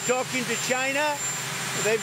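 A man speaking over a steady mechanical hum, with a thin high whine running beneath.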